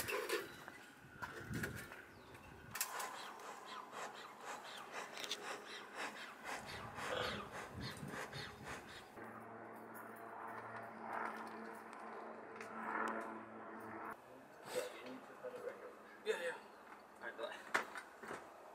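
Faint, distant voices with scattered light clicks and knocks, and a steady low hum for about five seconds in the middle.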